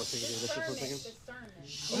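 A man's voice speaking indistinctly in a played-back phone livestream recording, with a breathy hiss at the start and again near the end.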